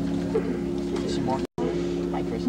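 Band music of long held notes that change pitch now and then, over the chatter of a crowd. The sound drops out completely for an instant about one and a half seconds in.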